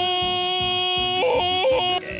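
A voice yodeling: one long held note, broken twice in the second half by quick yodel flips in pitch and back, over a steady low beat.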